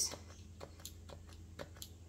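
Faint, irregular light taps and clicks of a gold paint marker's tip being pressed again and again onto a cardboard blotting card to prime it, as the paint won't come down and the pen may be running out.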